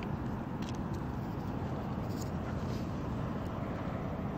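Wind blowing across a phone's microphone on an exposed cliff top, a steady low rumble with no let-up.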